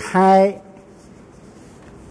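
A man speaking Khmer into a microphone: one short phrase at the start, then a pause with only faint low noise.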